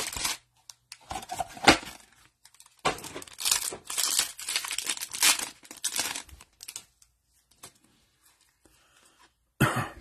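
Foil trading-card pack wrappers being torn open and crinkled by gloved hands, in a dense run of crackling rustle through the middle, with one short, sharp louder sound just under two seconds in. It goes quiet for a couple of seconds before the end.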